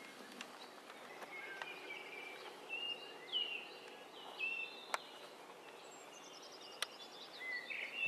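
Faint outdoor ambience with small birds singing: scattered short whistled chirps and, later on, a descending run of high notes, with a couple of brief clicks.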